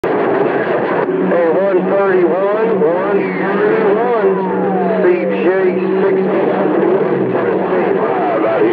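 CB radio receiving a strong, crowded channel: distorted, overlapping voices too garbled to make out, over static hiss and steady heterodyne tones. A long falling whistle sweeps down from about three seconds in.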